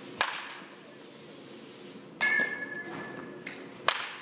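Batting practice: a bat hitting a baseball with a sharp crack just after the start and again just before the end. About halfway there is a third sharp hit followed by a metallic ping that rings for about a second.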